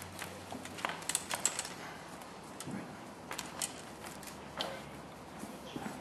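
Scattered light clicks and knocks as a music stand is set in place and the guitars are handled before playing, with no notes being played.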